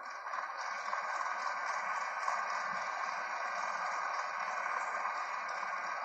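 Steady hiss-like noise that starts abruptly and holds an even level, with no pitch or rhythm.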